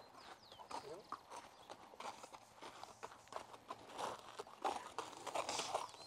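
Faint hoofbeats of a Chilean horse walking on a hard-packed dirt road, led in hand.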